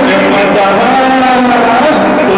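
Live Greek folk dance music: a melody moving in long held notes over a steady low note.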